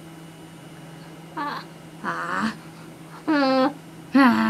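A young boy's wordless vocalisations: three short high-pitched calls, each under half a second, the last one held on a steady pitch.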